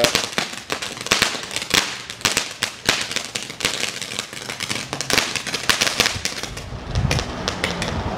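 Ground firework fountain spraying sparks, with a rapid, irregular crackle of small pops that thins out near the end. A low rumble rises near the end.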